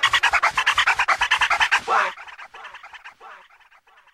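The end of a hip hop backing track: a rapidly repeated, chopped pitched sound, about ten pulses a second for two seconds. Then the bass drops out and the pulses echo on, fading away to nothing.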